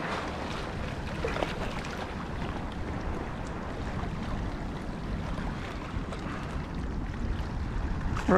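Wind buffeting the microphone over small waves lapping against jetty rocks, a steady rushing noise with a few faint ticks.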